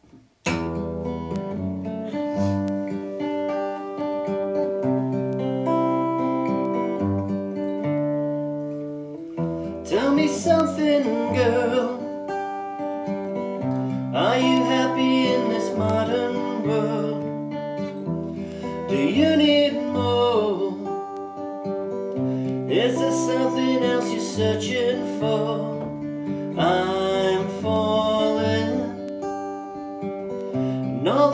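Acoustic guitar playing the chords of a song's intro, starting about half a second in, with a man singing over it from about ten seconds in.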